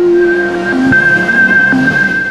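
Electronic music of an animated logo intro: a high tone held steadily over a lower note that fades out early on, with two short low notes.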